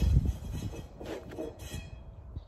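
A concrete block being handled and set onto the wall: a heavy low thump at the start, low rumbling as it is moved, and a short scrape about a second and a half in.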